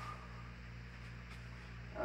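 Quiet room tone with a faint, steady low electrical hum and light hiss.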